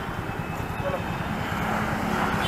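A motor vehicle engine idling close by: a steady low rumble.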